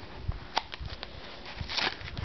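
Cardboard backing being pulled off a plastic blister pack by hand, with small clicks and crackles of the plastic. There is a sharp click about half a second in and a longer rustling crackle near the end.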